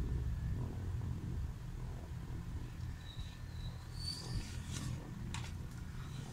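Sheets of paper rustling and crackling in a few short bursts near the end as they are handled and turned over, over a steady low hum, with a few faint high tones in the middle.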